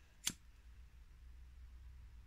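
One short, sharp click about a quarter of a second in, then only a faint low hum.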